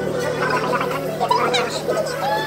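Indistinct voices over background music, with a steady low hum underneath; no words come through clearly.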